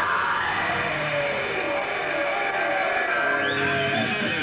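Live heavy metal band on stage, playing loud, steady sustained distorted sound, with crowd noise mixed in.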